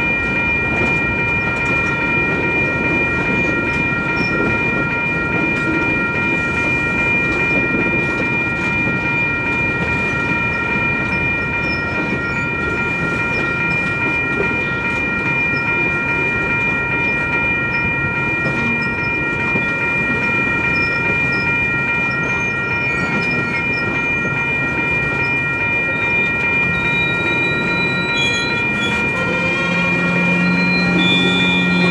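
Railroad tank cars of a freight oil train rolling past, a steady rumble and clatter of wheels on the rails. Several steady high-pitched ringing tones run over it throughout.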